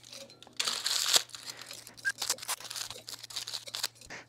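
Crumpled aluminum foil crinkling as a wad of it is pushed into the neck of a glass Erlenmeyer flask. There is a dense burst of rustling about half a second in, then scattered light crackles.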